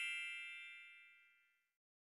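Fading tail of a bright, shimmering chime sound effect, many high ringing tones dying away together and gone about a second in.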